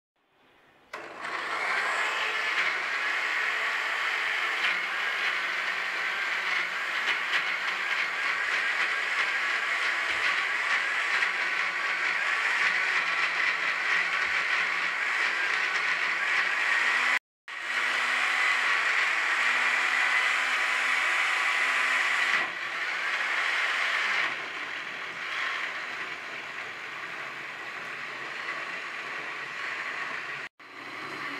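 Jackpot Magic Blender electric blender motor running under load, grinding chopped raw mango, red chillies and tomato with a little water into a smooth chutney paste. It starts about a second in, cuts out for a moment just past halfway, and gets quieter in two steps near the end.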